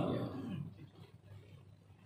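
A man's drawn-out spoken word trailing off through the first half second, then a quiet stretch of room tone with a steady low hum from the sound system.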